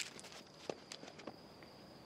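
Faint footsteps of a man running off quickly, a few soft scattered ticks, with a steady thin high tone behind them.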